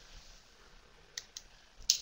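Quiet room tone over a headset microphone, broken by three faint, short clicks about a second in, shortly after, and near the end.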